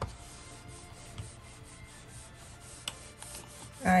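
Mini steam iron rubbing over folded cotton fabric as it is pressed, a soft repeated scuffing with a light knock of handling at the start.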